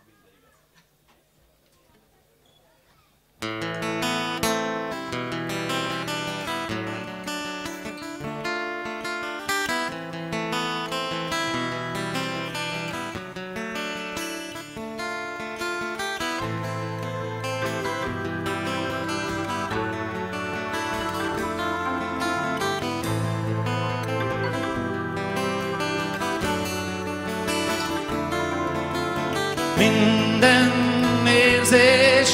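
Live rock band starting an instrumental song intro, with strummed acoustic guitar and electric guitars. It comes in abruptly about three seconds in after near quiet. A bass line grows stronger around the middle.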